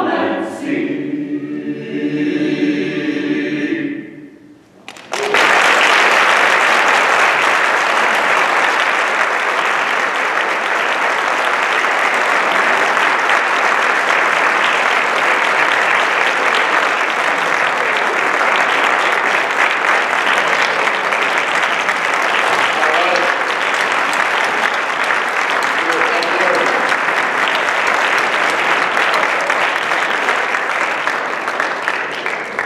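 A mixed choir holds its last chord, which dies away about four seconds in. After a brief hush, an audience breaks into applause that goes on steadily to the end.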